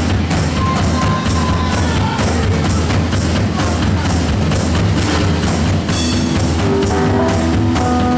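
Live blues-rock band playing an instrumental passage: a drum kit keeps a steady beat of about three hits a second under a distorted keyboard that holds and bends its notes over a heavy bass line.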